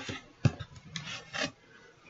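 Handling noise from a small whiteboard moved close to the microphone: a sharp knock about half a second in, then a few rough scraping rubs that stop about a second and a half in.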